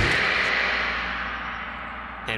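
Hissing video static, the sound of a camcorder feed cutting out, fading away steadily over about two seconds.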